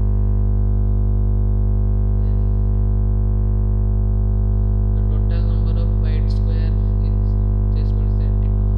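Loud, steady electrical hum with a buzzing edge, the mains hum of a poorly grounded recording setup that gives the lecture its bad audio quality.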